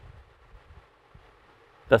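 Hurricane 18-inch wall-mount fan running on its lowest setting: a faint, steady hiss of moving air, not loud at all. A man starts speaking just before the end.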